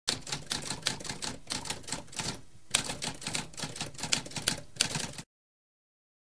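Typewriter keys clacking in a rapid run of keystrokes, with a short pause about halfway through; the typing stops abruptly a little over five seconds in.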